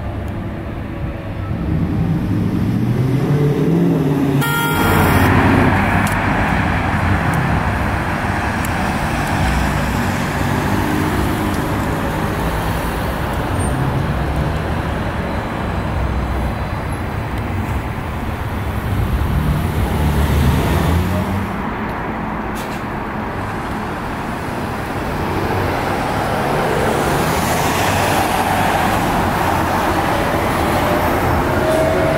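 Road traffic noise, with a New Flyer E40LFR electric trolleybus approaching and passing close by, louder near the end.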